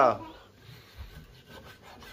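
Long kitchen knife slicing raw pork on a wooden chopping block: a quiet rubbing, sawing sound of the blade drawn through meat against the wood, with a dull knock about a second in.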